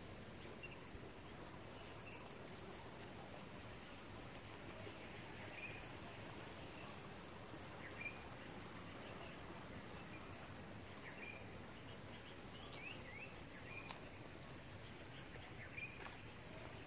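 Steady high-pitched drone of insects in the garden, with a few faint short chirps scattered through it.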